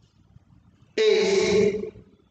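A man's voice holding one drawn-out syllable for under a second, starting about a second in, with quiet room tone before and after.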